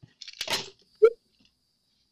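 Handling noise on a work table: a brief rustle and scrape, then one sharp knock just after a second in, the sound of a small object set down on the tabletop.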